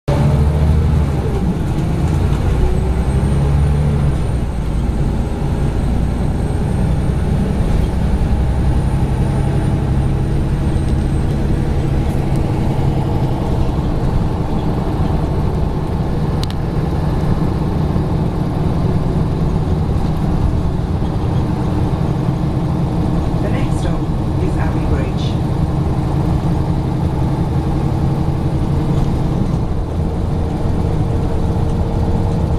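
Inside a moving double-decker bus: its diesel engine droning low and steady along with road and cabin noise, the engine note shifting now and then as it changes speed. A faint high whine runs for about eight seconds near the start.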